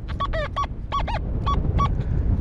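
XP Deus metal detector sounding its target tone on the Deep Relic program as the coil passes over a piece of lead: a quick run of short, real howl-like tones, several bending up and down in pitch.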